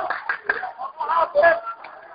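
Crowd of protesters shouting and calling out in overlapping voices, dying down near the end.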